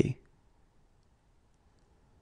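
The last syllable of a spoken word, cut off within the first fifth of a second, then near silence broken only by a few faint, tiny clicks.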